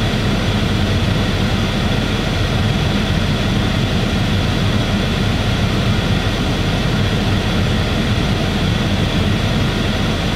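Steady rushing noise with a low hum underneath, unchanging throughout: a running truck and its ventilation heard inside the cab.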